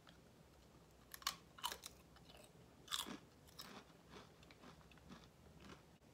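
A person biting into and chewing a ridged barbecue-flavour Ruffles potato chip: a string of crisp, irregular crunches, the loudest about a second in and again about three seconds in, then smaller ones.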